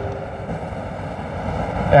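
Steady low background rumble of a large hall's room noise, with no clear event standing out.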